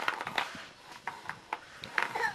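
A small broom scraping and knocking on brick paving as a toddler pushes it: a run of short, uneven scrapes and taps, about eight in two seconds.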